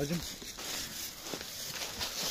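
Footsteps and rustling in dry fallen leaves, an irregular crunching as someone walks through the leaf litter and pushes past conifer branches.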